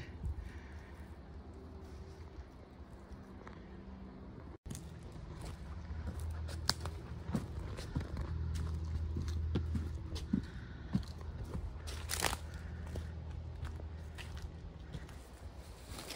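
Footsteps through dry leaf litter and twigs on a forest floor, with scattered crackles and one louder click about twelve seconds in, over a low steady hum.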